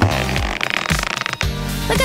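Noisy blowing sound of a giant bubble-gum bubble being inflated for about the first second and a half, over background music.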